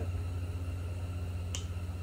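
A single sharp click about a second and a half in, as a small plastic cover on a grab handle is popped with the fingers, over a steady low hum.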